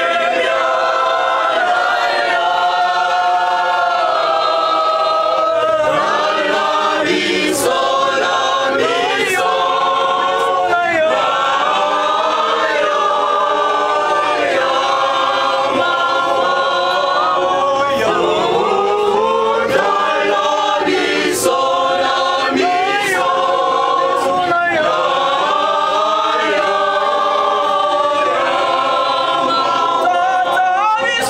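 A choir of young men's and women's voices singing together in chorus, holding long notes and moving from note to note.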